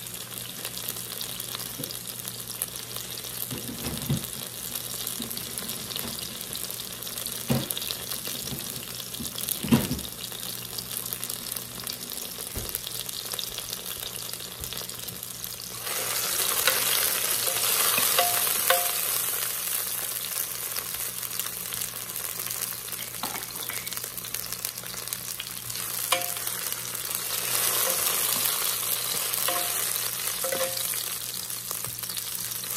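Onion rings sizzling in hot peanut oil in the nonstick insert of an all-in-one slow cooker, with a few light knocks in the first ten seconds. About halfway through, a wooden spatula starts stirring them and the sizzle suddenly grows louder, easing off and then rising again near the end.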